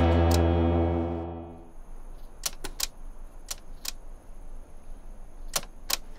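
A distorted electric guitar chord rings on and fades away over the first second or two, the end of a rock music track. Then several faint, sharp clicks in near quiet.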